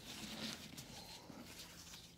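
Faint rustling and crackling of a molded-pulp egg carton being pressed flat and handled with the fingers.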